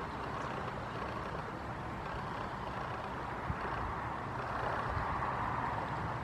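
Steady outdoor background noise, a low rumble with a hiss over it, and one short soft knock about three and a half seconds in.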